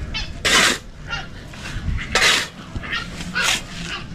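Shovel scraping into a pile of sand on hard ground, three short rough scrapes about a second and a half apart.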